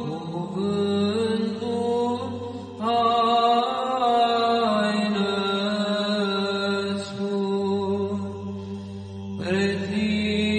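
Orthodox psaltic (Byzantine-style) chant: voices sing a slow, ornamented melody over a steady held drone, the ison. New phrases begin about three seconds in and again near the end.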